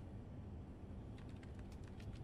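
Computer keyboard being typed on: a quick run of faint key clicks starting a little past halfway, over a low steady background hum.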